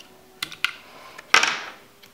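Light plastic clicks, then one sharper click with a short rasp about a second and a half in, as AA alkaline batteries are pried out of a plastic bike light's battery compartment.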